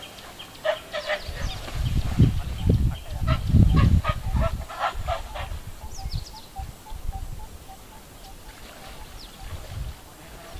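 A run of honking animal calls, several a second, over a low rumble. About six seconds in it gives way to a softer string of short, thin calls.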